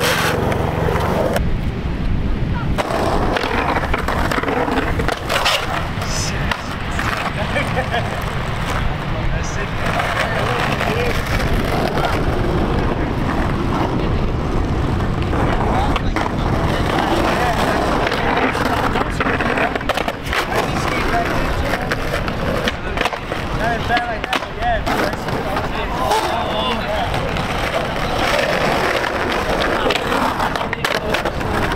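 Skateboards rolling on concrete and grinding their trucks along a curb in slappy curb tricks, with sharp clacks as the boards hit the pavement.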